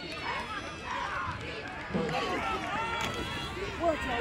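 Spectators at a football game, many voices talking and calling out at once, a little louder from about two seconds in.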